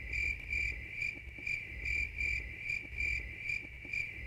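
Crickets chirping in an even, pulsing rhythm: the comic 'crickets' sound effect for an awkward, blank silence after a question.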